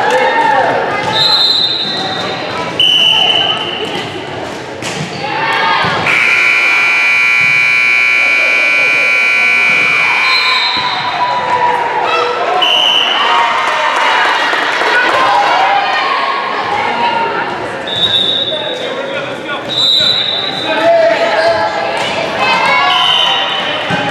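Gymnasium scoreboard buzzer sounding steadily for about four seconds once the clock runs out, a few seconds in. Around it, short high squeaks of sneakers on the hardwood court, ball contacts and players' voices echo in the large hall.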